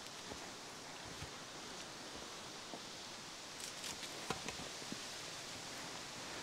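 Footsteps and rustling through trailside undergrowth on a forest path, over a faint steady outdoor hiss; the steps grow louder and more distinct about halfway through as the walker draws near.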